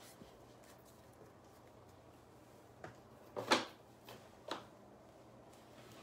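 Near-quiet room tone, then a few short rustling sounds in the middle, the loudest about three and a half seconds in.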